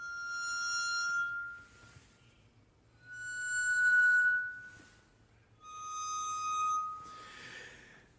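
Water-tuned wine glasses bowed with a string bow: three sustained, ringing notes, each lasting a second and a half to two seconds and swelling and then fading. The second note is slightly higher than the first, and the third is lower.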